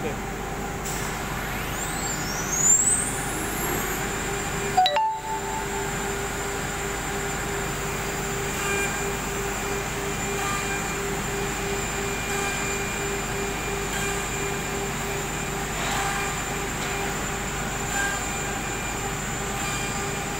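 SUDIAO SD-1325S automatic-tool-changer CNC router running a drilling job: a steady spindle whine over continuous machine noise, with a rising whine in the first few seconds and two brief louder bursts around three and five seconds in.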